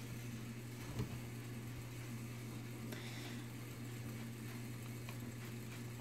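Quiet room tone: a steady low hum with a faint soft knock about a second in.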